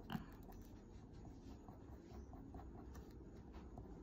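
Faint scratching and ticking of a fine-tip ink pen on paper as it draws short, light diagonal strokes, close to silence.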